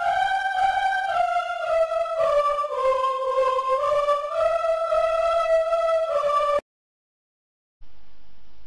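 Sonatina Orchestra Choir VST's 'Ladies' women's-choir samples playing a simple tune, one held note after another, falling and then rising again. It cuts off about a second and a half before the end, and after a short silence a steady hiss comes in.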